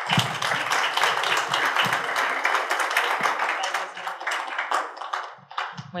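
Audience applauding, thinning out to a few scattered claps about five seconds in.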